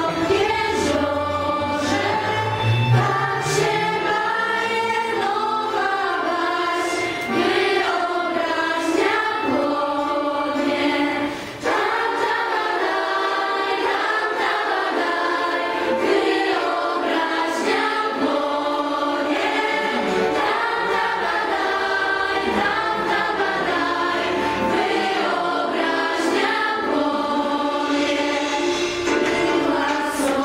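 A group of young girls singing a song in Polish together, without a beat or bass underneath, with a brief break about a third of the way through.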